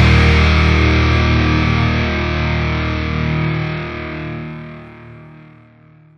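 Final held chord of a rock/metal song on distorted electric guitar, ringing out and steadily fading away until it dies out near the end.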